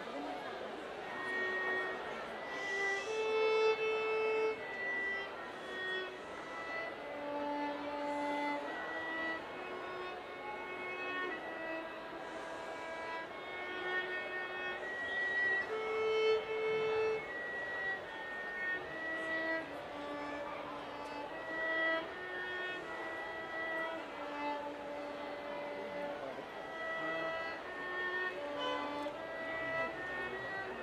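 Solo violin playing a melody. Bowed notes follow one another steadily, each held about half a second to a second, moving up and down in small steps.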